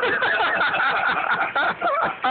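Laughter, briefly dipping near the end.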